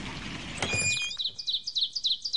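Songbird chirping: a few high whistled notes, then a fast, even series of short repeated chirps, about seven a second.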